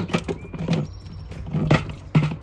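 Wire basket and aluminium drink cans knocking and clinking as the loaded basket is lifted out of a portable fridge: a string of short, uneven knocks with a brief metallic ring.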